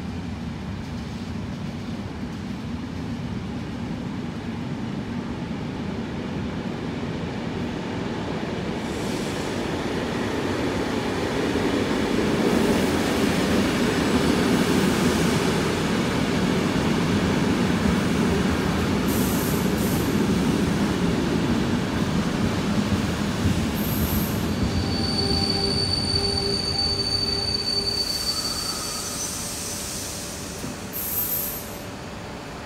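NMBS/SNCB MS96 electric multiple unit pulling into a station platform: a rumble of wheels and running gear that grows as the train rolls alongside. It slows with high, steady squealing from the brakes and wheels in the last few seconds.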